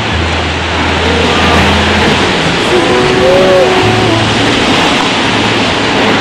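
Steady roar of large ocean waves breaking, under background music with sustained low bass notes.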